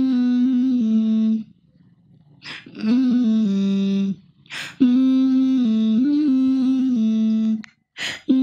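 A voice humming a slow, wordless melody in long held notes, in three phrases separated by a short pause and audible breaths.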